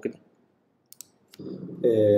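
Mouse clicks: two or three short, sharp clicks, one close pair about a second in and one more a moment later, in otherwise dead silence, as the play button of a video player is pressed. Playback then starts and a man's recorded voice comes in near the end.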